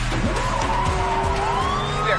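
A car driving fast with its tyres squealing in long drawn-out tones, one rising about halfway through, over the low rumble of the car and background music from a TV soundtrack.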